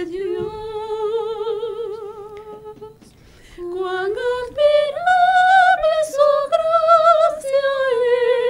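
A woman singing a Christian worship song unaccompanied, holding long notes with vibrato. After a short break about three seconds in, the melody climbs step by step to higher notes.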